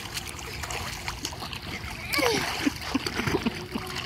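Pool water splashing and sloshing as a child moves about in it. Faint voices come in briefly in the middle.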